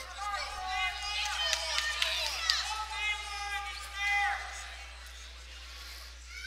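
Raised voices shouting in a gym, several high calls over the first four and a half seconds, then quieter.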